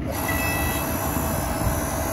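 Electric Power Smart log splitter, converted into a forging press, running its motor and hydraulic pump to drive the ram: a loud, steady mechanical run with a constant whine that starts abruptly when the button is pressed.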